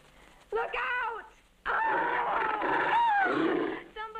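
A film monster's animal-like vocal cries: a short cry about half a second in, then a longer, louder one from just under two seconds in until near the end, its pitch wavering.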